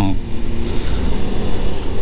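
Wind rush and the steady running of a Suzuki GSX-S750's inline-four engine while riding at a cruising pace.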